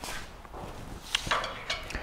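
Quiet footsteps and a few light knocks as a Phillips screwdriver is set into the bolt holes at the back of a truck bed with wood floor boards.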